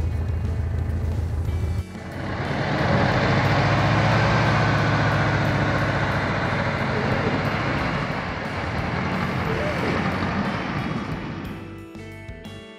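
Air-cooled flat-four engine of a Mexican-built VW Beetle (Type 1) pulling away and driving off, its sound swelling about two seconds in and then slowly fading as the car moves off. Music comes in near the end.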